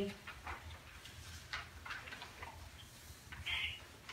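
Quiet room tone: a low hum under faint scattered ticks and rustles of paper being handled, with a brief high squeak about three and a half seconds in.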